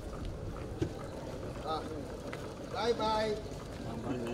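Outdoor ambience: a steady low rumble with people's voices, one voice louder about three seconds in.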